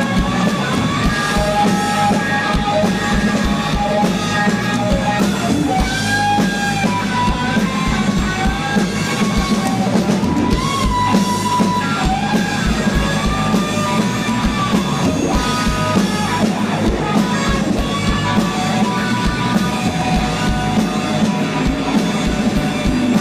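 Live rock band playing: drum kit, bass and electric guitars, with a melody line that slides and bends between notes over the band.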